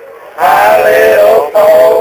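A short pause, then young male voices singing a held, sliding melody in long notes.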